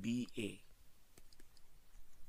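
A few faint, sharp clicks of a stylus tapping on a pen tablet as handwriting is written, following a brief spoken "b a" at the start.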